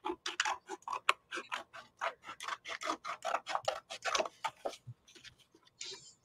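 Scissors cutting through a folded paper plate: a quick run of faint snips and paper scraping that stops about five seconds in.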